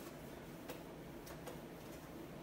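Faint, irregular clicks and light taps as a hand wipes writing off a whiteboard, about four in two seconds, over a low steady room hum.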